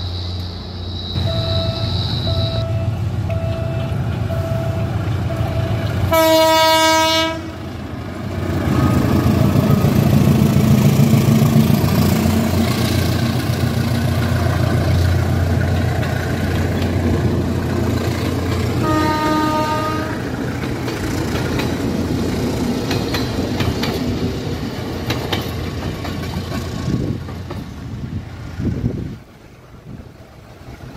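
Philippine National Railways train passing a level crossing: a steady low rumble and wheel clatter. The horn sounds twice, a long loud blast about six seconds in and a shorter one about nineteen seconds in. The rumble fades near the end.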